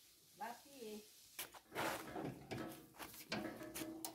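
Faint voices and a scattering of light clicks and knocks, starting about a second and a half in after a near-silent start.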